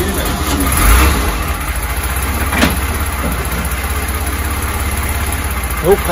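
1964 Mercedes 220's straight-six petrol engine, just started, swelling briefly about a second in and then settling into a steady idle.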